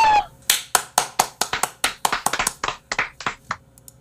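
Hand clapping: a few people clapping unevenly for about three seconds, stopping shortly before the end.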